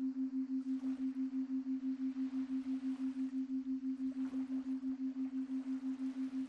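A steady low pure tone that pulses evenly about five times a second. It is a beating background tone of the binaural-beat kind, made for headphone listening.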